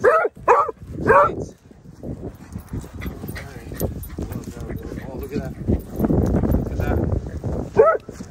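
A dog barking three short times in quick succession, then quieter scuffling noise of dogs playing close to the microphone.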